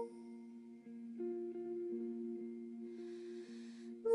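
Soft guitar notes ringing on quietly, a few new notes plucked over the held ones, in the middle of a slow jazz lullaby.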